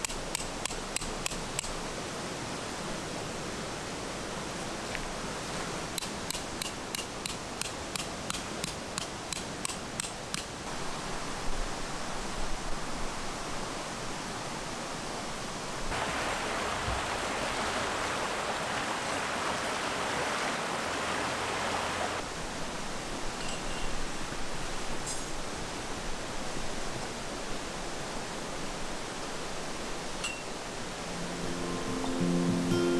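A metal-headed peg hammer driving a forged steel tent peg into the ground in even strikes, about three a second, at the very start and again for several seconds later on, with one louder knock after that. Behind it a mountain stream rushes steadily, louder for several seconds past the middle.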